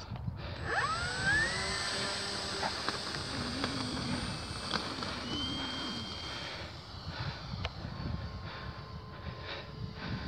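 Electric motor and propeller of a FlightlineRC Spitfire radio-control model plane powering up for take-off: a whine that rises in pitch about a second in and then holds steady as the model runs across the grass and climbs away. Wind rumbles on the microphone throughout.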